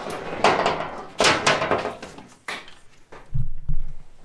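Handling noise from a door skin being fitted onto a UTV door frame by hand: scrapes and knocks in the first couple of seconds, then two or three low dull thumps near the end.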